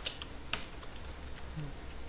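Computer keyboard keystrokes while typing code: a few quick clicks at the start and one sharper click about half a second in, then only sparse faint taps.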